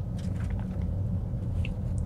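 Steady low road and tyre rumble inside the cabin of a Tesla Model S Plaid, an electric car with no engine note, as it drives along.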